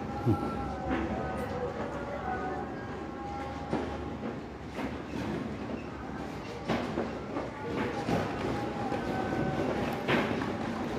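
Steady background hum of a large exhibition hall, with faint distant sounds and occasional soft knocks and thuds.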